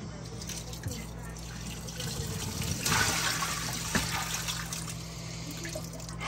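Water being poured out of a plastic pet water fountain into a stainless steel sink, splashing loudest for a couple of seconds about halfway through, with a few light plastic knocks.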